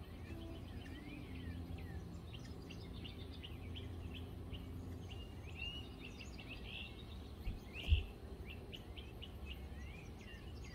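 Birds chirping in the background, a busy run of short, quick chirps, over a steady low rumble; a brief low thump about eight seconds in.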